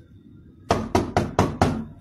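Knocking on a wooden panel door with a gloved hand: a quick run of about six raps, starting just under a second in.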